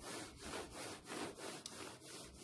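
Hands rubbing back and forth on clothing close to the phone's microphone: a rhythmic, scratchy rasping at about five strokes a second.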